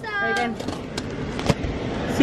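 A girl's high-pitched, drawn-out vocal sound, falling slightly in pitch, lasts about half a second. Three sharp clicks follow at about half-second intervals.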